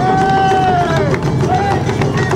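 Taiko drumming with a large odaiko drum, struck in a steady repeated beat. Over it a long held shout falls off in pitch about a second in, and a shorter call comes near the end, all over crowd noise.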